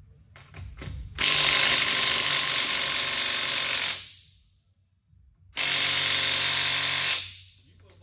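Cordless impact wrench run twice on a truck wheel's lug nuts after a few light clicks: a burst of about three seconds, then one of about a second and a half, each winding down as it stops.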